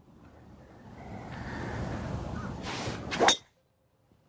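Golf driver striking a ball: one sharp, loud impact a little over three seconds in. Before it comes a rushing noise that builds steadily.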